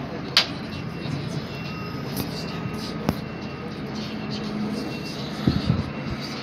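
Steady low rumble of a heavy engine in the background, with a sharp click about half a second in and another about three seconds in.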